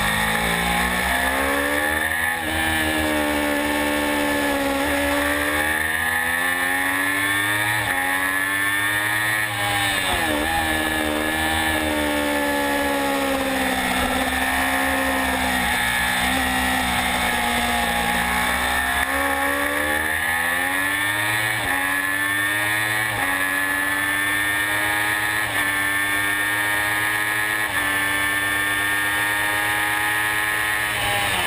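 Triumph Daytona 675's three-cylinder engine at racing speed, recorded on board, its pitch rising and falling through the corners. Near the end it climbs through a quick series of upshifts, each a short drop in pitch, over a constant rush of wind.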